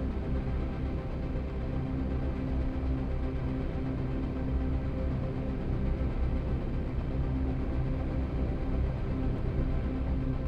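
Background music: a steady, low droning ambient track with sustained tones and no beat.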